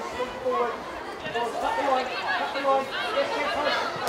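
Several indistinct voices calling and shouting at once across a football pitch, the on-field talk of players during play.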